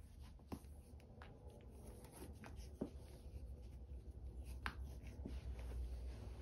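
Soccer cleat laces being pulled tight and tied: faint scratchy rubbing and rustling of the laces with a few small scattered ticks.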